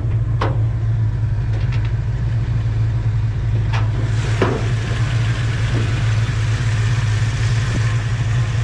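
A 360 V8 with long-tube headers idling steadily in a 1983 Dodge Ramcharger. Over it come sharp metallic clicks and clunks, about half a second in and again around four seconds in, as the hood is unlatched and raised.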